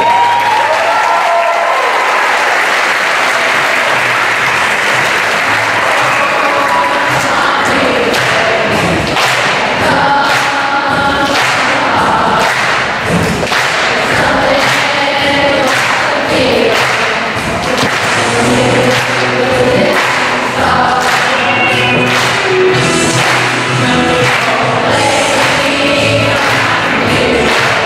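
Large children's choir singing with an instrumental accompaniment that carries a steady beat.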